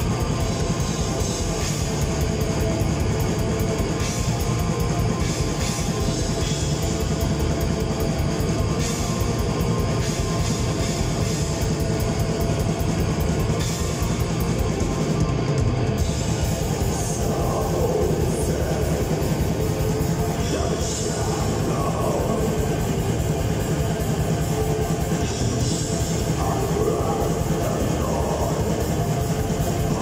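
A live black metal band playing loud and without a break: distorted guitars and bass over fast, densely packed drumming, heard from the crowd. A vocalist's voice comes through in the second half.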